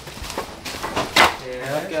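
Split firewood pieces knocking against each other as they are set onto a stack: several wooden clacks, the loudest a little over a second in.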